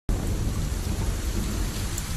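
Heavy rain falling steadily, with a deep low rumble underneath.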